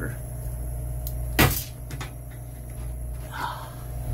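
A screwdriver prying at the rust-seized rotor of a freezer's evaporator fan motor to free it: one sharp metallic click about a second and a half in, with a few lighter ticks around it, over a steady low hum from the powered unit.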